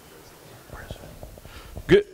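Faint whispered voices, then a short sharp sound just before the end.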